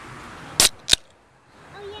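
Aluminium Miller Lite beer can being cracked open by its pull tab: a short sharp pop with a brief fizz a little over half a second in, then a second sharp click just under a second in.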